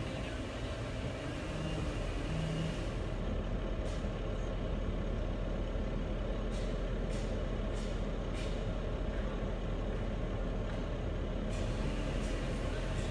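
An engine idling steadily with a low hum, with a few short sharp clicks or knocks in the second half.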